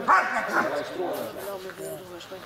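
German Shepherd dog giving short high-pitched cries while it lies gripping a bite pillow. The cries are loudest at the start and trail off into quieter, lower ones.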